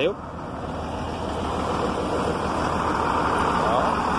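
An engine running steadily, growing gradually louder.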